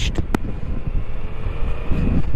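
Motorcycle engine running at steady cruising speed, heard under a heavy low rumble of wind and road noise on the camera microphone, with one brief click about a third of a second in.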